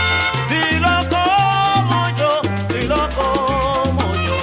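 Salsa music: a bass line repeating in short notes under a sustained, wavering melody line.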